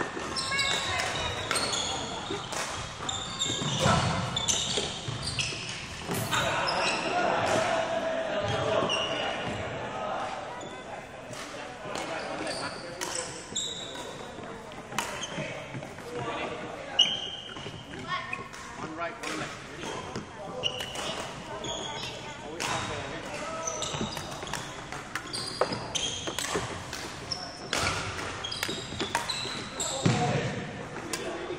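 Indistinct voices in a large hall, with sharp knocks and thuds scattered through, echoing off the hall.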